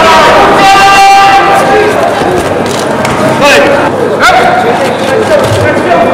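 Arena crowd of spectators shouting and cheering, many voices overlapping, with a short held tone about a second in.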